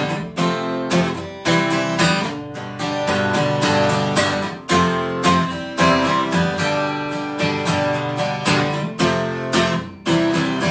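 Acoustic guitar strummed, chords ringing under a quick run of strokes.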